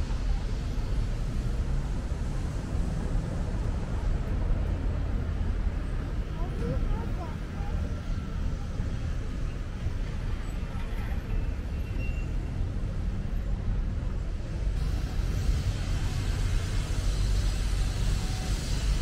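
Outdoor city-square ambience: a steady low rumble of street traffic, with faint voices of passers-by.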